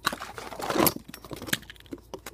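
Hands handling plastic Beyblade parts and a cardboard box: a rapid run of clicks, rattles and rustling, loudest just before a second in.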